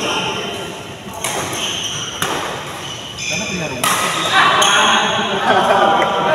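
Badminton rally in an echoing indoor hall: rackets strike the shuttlecock a few times, about a second apart, amid players' voices, which grow louder near the end.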